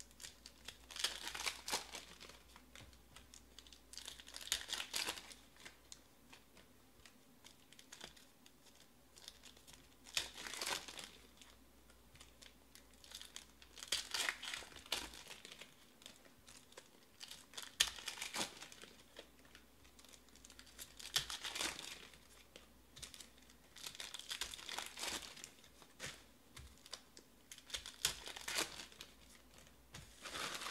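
Shiny foil trading-card pack wrappers being torn open and crinkled by hand, in repeated bursts every three to four seconds.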